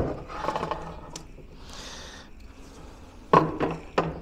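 A battery cell pack being handled and set down in its plastic case: a knock at the start, scraping and rubbing for about a second, then two more knocks about three and a half seconds in and a third at the end.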